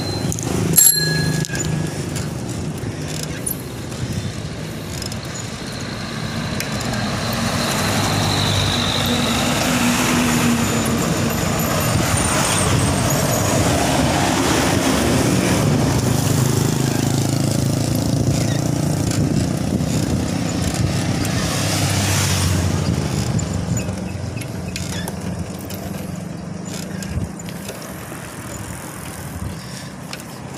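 A bicycle bell rings briefly about a second in. Then the noise of motor traffic passing on the road builds, is loudest through the middle, and fades again, heard over the riding noise of the moving bicycle.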